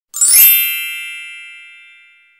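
A single bright, shimmering chime sound effect: one ding struck about a quarter second in, ringing with high tones and fading away slowly over the next two seconds.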